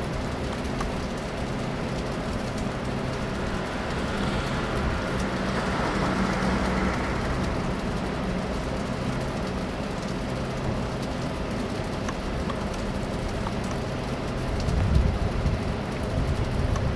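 Steady hum of road traffic with a low engine drone, swelling louder near the end as a vehicle passes.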